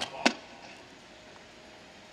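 A single short, sharp sound about a quarter of a second in, then a quiet lull.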